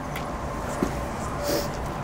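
A low, steady background rumble, with a light click a little under a second in and a brief hiss about halfway through the second half.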